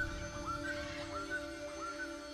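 Trailer soundtrack music: a quiet sustained drone with short, high chirp-like pitch glides repeating over it, several times a second.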